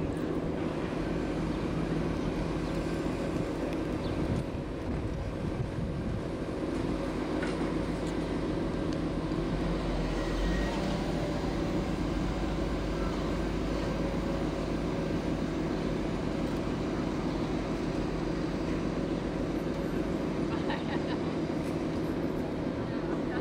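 Canal tour boat's engine running at steady cruising speed, heard from on board as a constant low drone with steady tones.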